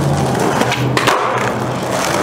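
Skateboard wheels rolling loudly over rough concrete, with a few sharp clacks from the board near the middle.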